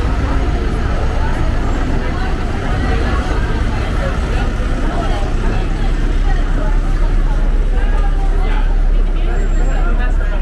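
A red double-decker bus running close by, its low engine rumble growing louder about halfway through, with passers-by talking.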